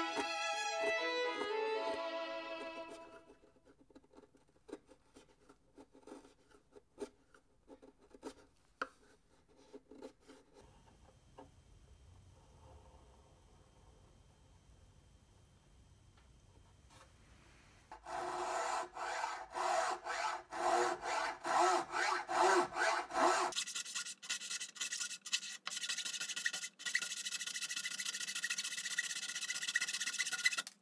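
Violin music fades out in the first few seconds. Then a knife pares wood on a violin neck in sparse small cuts, and a little past halfway a draw knife shaves the neck in quick, rhythmic scraping strokes that run on loudly.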